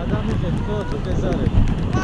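Wind buffeting the microphone of a camera carried on a tandem paraglider in flight, a steady rumble, with a voice faintly heard over it.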